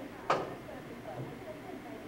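A cue tip striking the cue ball once in a pool game: a single sharp click, the stroke of a called bank shot.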